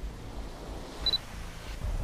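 A steady low rumble with one short, high beep about a second in.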